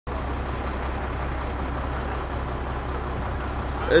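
Steady low rumble of an idling heavy vehicle engine, even in level throughout.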